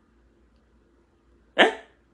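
Near silence, then near the end one short, sharp vocal sound from a man, a brief exclamation lasting about a third of a second.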